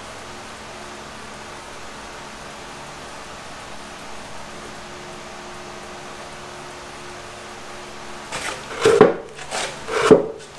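A steady low hum of room or machine noise with a few faint steady tones. Near the end, several sudden louder knocks and rustles.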